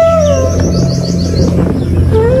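Background music: a held flute note that slides down about half a second in, over a steady low drone, with a quick run of short high bird-like chirps in the middle.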